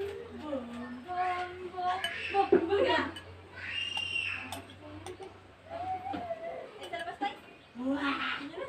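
Voices talking, with a metal spoon clinking against a ceramic bowl.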